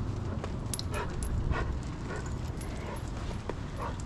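A Doberman on a leash searching for a scent, with a few faint short sounds from the dog about a second in, over a steady low rumble.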